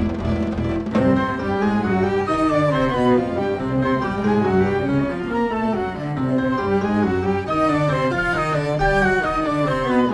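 Instrumental passage of string music. Cello and double bass are prominent among the bowed strings. A held chord gives way about a second in to busy, repeating moving figures.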